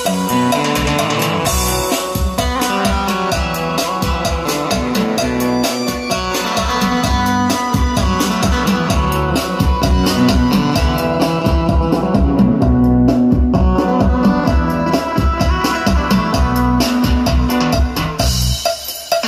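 Recorded music with a steady drum beat playing loud through a Kinter MA-700 12 V mini amplifier driving a pair of BMB speakers, as a playback test of the amplifier.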